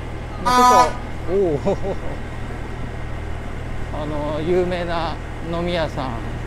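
A short, loud toot from a trumpet-like party horn blown by a passing motorbike rider, its pitch dropping as it ends, over a steady engine drone.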